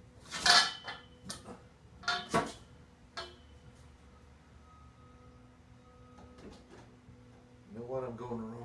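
Hand conduit bender and metal conduit knocking and clinking as the pipe is levered around the bender's shoe: a few sharp metallic knocks over the first three seconds, the loudest about half a second in.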